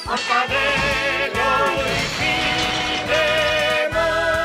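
Cartoon theme song music, with held notes that waver and a few sliding pitches.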